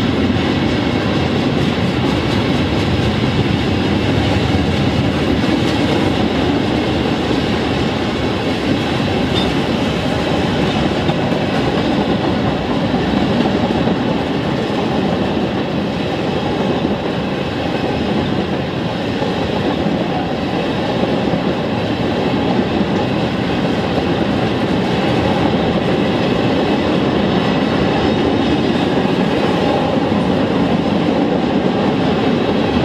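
A freight train of tank cars rolling steadily past at speed. Its steel wheels clatter over the rail joints in a continuous run of clicks.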